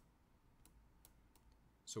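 A handful of faint, sharp clicks over near-silent room tone: a stylus tapping on a pen tablet as digits are handwritten.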